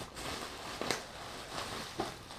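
Bubble wrap rustling as it is handled and a metal vise is pulled out of it, with a couple of short sharp crackles.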